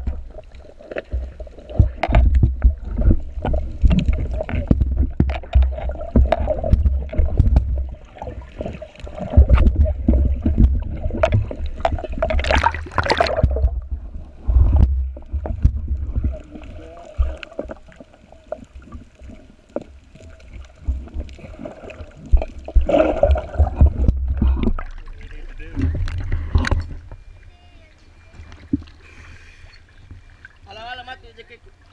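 Underwater sound through a camera housing: scuba divers' exhaled bubbles rumbling and gurgling in surges every few seconds, with many clicks and knocks against the housing and a louder rushing burst about halfway through.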